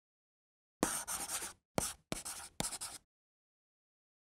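Pen scratching across paper in four quick strokes over about two seconds, a writing sound effect for a signature being written.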